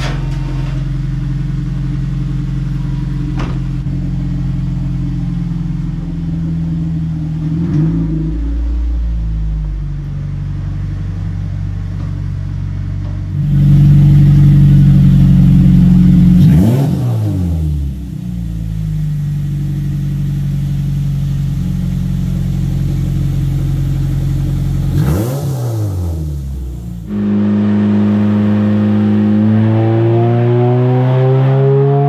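Toyota 2ZZ-GE four-cylinder engine in an MR2 Spyder running on a chassis dyno under tuning, held at a steady note with a louder stretch a little before the middle. Its pitch drops and swings twice, then climbs steadily near the end as the car accelerates on the rollers.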